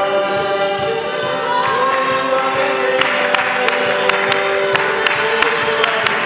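Congregation singing a gospel worship song with held notes over musical accompaniment. About halfway through, a steady beat of hand claps comes in, about three a second.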